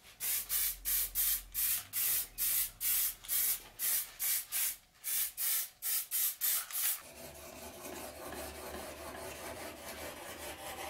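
Rapid short bursts of spray, about three a second, as a finish is sprayed onto a wooden knife handle. About seven seconds in they give way to a steady rubbing of a sharpening stone drawn along a steel blade.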